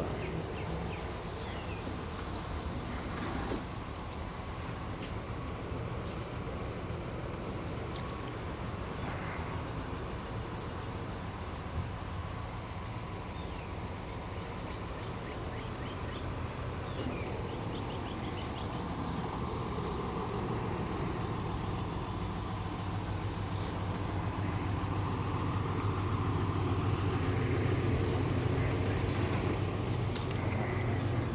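Outdoor parking-lot ambience: a steady low hum of a vehicle engine and traffic, which grows louder over the last ten seconds.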